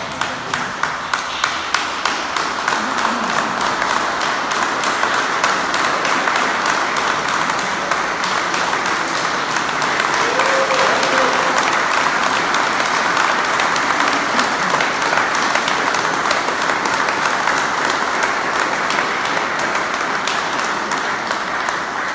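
A crowd applauding steadily for about twenty seconds, with one nearby clapper's sharp, evenly spaced claps standing out at the start.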